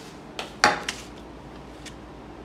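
Dishes knocking and clinking as they are handled on a table: a few short knocks in quick succession, the loudest about two-thirds of a second in, then a single lighter click near the end.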